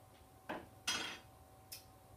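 A metal bar spoon being set down, clinking twice, about half a second and a second in, the second clink ringing briefly. A fainter knock follows near the end.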